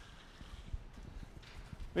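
Faint, irregular footsteps on a hard floor over quiet room tone.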